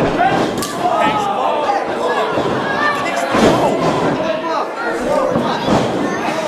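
Shouting voices of a wrestling crowd, with two heavy thuds of bodies hitting the ring mat, one about three and a half seconds in and one near the end.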